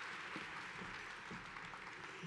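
Large audience applauding, the clapping slowly dying away.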